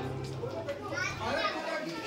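Background music ending about half a second in, followed by faint children's voices and chatter in the room.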